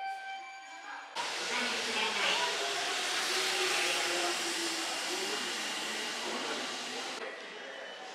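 Electric commuter train moving along a station platform behind platform screen doors: a loud, steady run of wheel and rail noise with a faint motor whine. It starts abruptly about a second in and cuts off sharply near the end.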